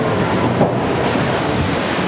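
Water rushing and splashing around a log-flume boat moving along its water channel, a steady loud wash with wind buffeting the microphone.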